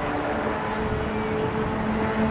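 A steady low drone with a held hum, like a distant engine, over outdoor noise.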